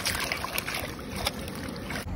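Water sloshing and splashing in a plastic tub as vegetables are swished around by hand to wash them, with small splashes every so often.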